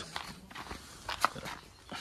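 Faint footsteps crunching on gravel, a few steps about half a second apart, the clearest one a little past a second in.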